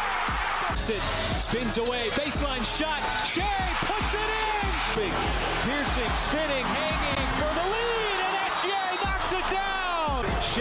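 NBA game highlight audio: a basketball bouncing on the hardwood court in repeated short knocks, with music playing over it.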